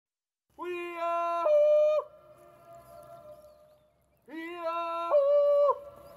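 A man's wordless alpine yodel (Jutz): two calls, each holding a low chest note and then leaping about an octave up to a held high note. After the first call the high note rings on faintly, echoing off the mountains.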